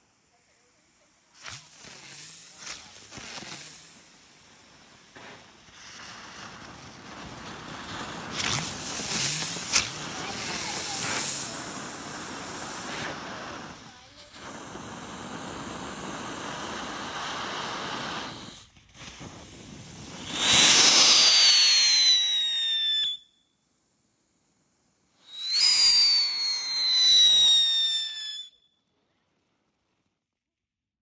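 Black Cat "Airport" novelty ground firework going off: a spark fountain hissing and crackling in several stages with brief pauses. Near the end come two loud whistles, each falling in pitch and lasting about three seconds, with a short gap between them.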